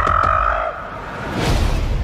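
A young giant ape's high, held cry with movie-trailer drum hits beneath it, ending under a second in. A broad swell of noise follows about a second and a half in.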